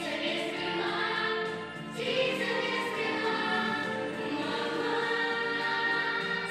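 Children's choir singing through headset microphones, with a brief dip about two seconds in before the next phrase begins.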